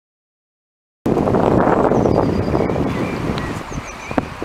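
Wind buffeting the camera microphone, starting suddenly after a second of silence and easing slightly later, with a few faint high chirps above it.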